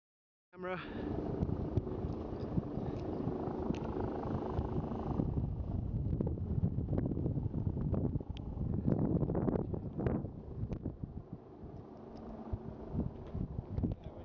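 Wind buffeting the camera's microphone: a loud, uneven rumble that starts about half a second in and rises and falls in gusts, with a few small knocks from handling.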